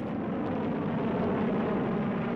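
Steady rushing noise of a missile's rocket exhaust as it climbs after launch.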